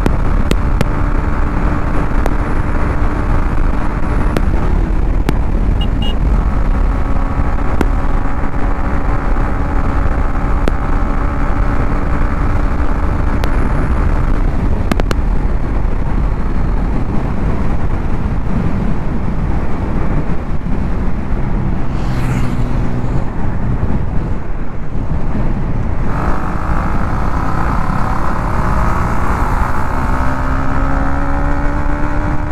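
Motorcycle engine running on the move, under heavy wind rumble on the action camera's microphone. The engine note holds steady for the first few seconds, then settles lower. Near the end it rises as the bike accelerates.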